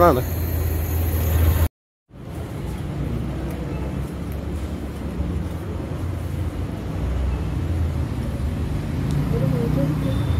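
Street ambience with a steady low traffic hum, broken off abruptly by a moment of dead silence about two seconds in. A steady low room rumble follows, with faint, indistinct voices near the end.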